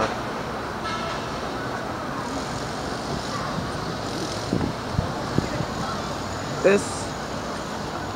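Steady city street ambience: the even hum of road traffic passing below, with a few faint knocks in the middle.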